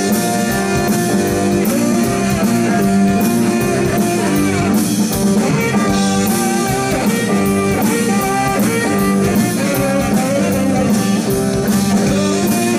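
Live blues-rock band playing an instrumental passage with no singing: electric guitar to the fore over bass and a drum kit keeping a steady beat, with tenor saxophone.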